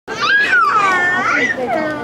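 Young children's high-pitched voices, several at once, calling out and chattering with sliding, sing-song pitch.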